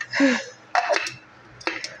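Kitchenware being handled on a countertop: two short clinks and knocks, a little under a second apart, like a blender jar, lid or utensils being set down.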